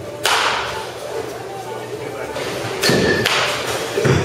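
Baseball bat hitting pitched balls in an indoor batting cage: a sharp crack about a quarter second in, then a louder hit near three seconds in with a brief ring and a second impact just after.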